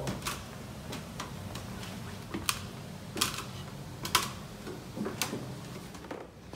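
Shoes stepping up the rungs of a wooden ladder: a series of sharp, irregular knocks and clicks, roughly one a second, over a steady low hum.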